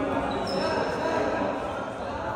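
Several players' voices talking and calling at once, echoing in a large gym hall, with a thin high squeak held for about a second starting half a second in.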